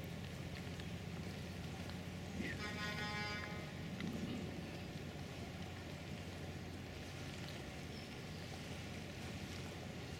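Outdoor quayside ambience: a steady low rumble and hiss. About two and a half seconds in, a brief high pitched tone with several overtones sounds for about a second.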